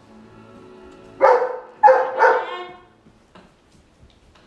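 A dog barks three times in quick succession, the last bark longer, over steady background music from a TV.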